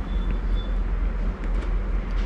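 Steady low hum under an even background noise, with a faint brief high-pitched tone in the first half second.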